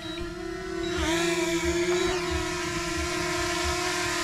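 Small consumer quadcopter drone hovering low as it comes down to land, its propellers making a steady, high whine.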